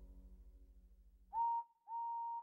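The last notes of a soft song fade away, then a steam locomotive whistle blows two toots. Each toot scoops up to a steady high pitch, and the second is a little longer than the first.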